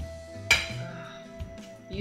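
A single clink of metal cutlery against a dinner plate about half a second in, leaving a clear ringing tone that fades over about a second and a half.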